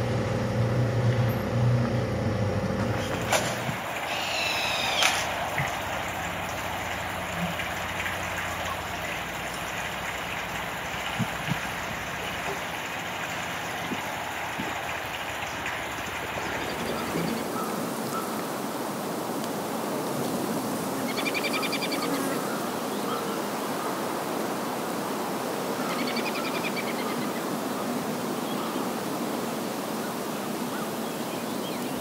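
Outdoor ambience: a steady hiss with an engine hum in the first few seconds, then a bird's short chirping calls about four seconds in and twice more in the second half.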